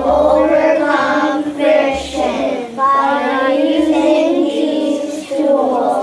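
A class of young children singing together in unison, a chant-like tune of held notes.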